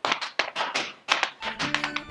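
Irish dance hard shoes striking a hard floor in a quick, uneven run of sharp taps, about five or six a second. Music with low sustained notes comes in about a second and a half in.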